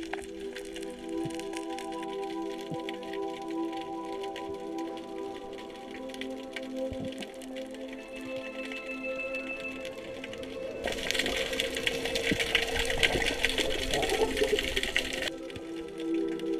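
Background music of sustained, held notes. About eleven seconds in, a louder rushing hiss joins it for about four seconds and cuts off suddenly.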